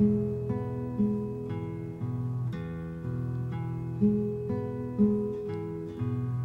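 Acoustic guitar playing a slow, steady accompaniment of chords, a new chord about every half second with a stronger one roughly once a second.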